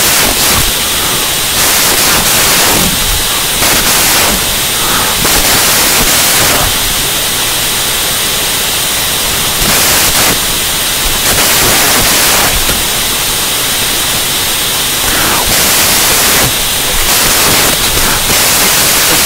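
Loud electronic static hiss with no speech or music, swelling and dipping in patches every second or two.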